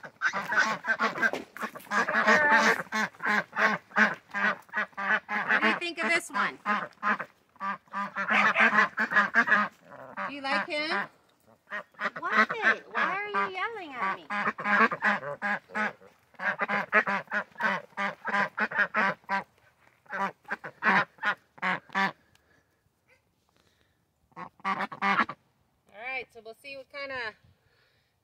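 White domestic ducks quacking loudly in long, rapid bouts of repeated quacks. There are short breaks between the bouts and a lull before a last few quacks near the end.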